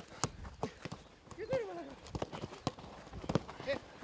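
Football being kicked in a quick passing drill on grass: irregular short, sharp knocks of boot on ball. Faint shouts from players come in between.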